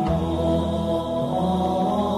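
Slow Buddhist devotional chant sung over soft instrumental music; a low tone comes in right at the start.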